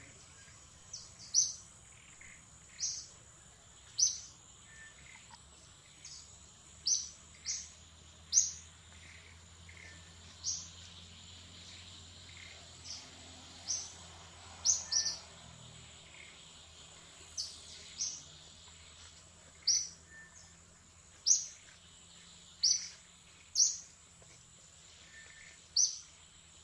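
A bird calling with short, sharp high chirps, about one every second or two at irregular intervals, some in quick pairs, over a steady high-pitched hum.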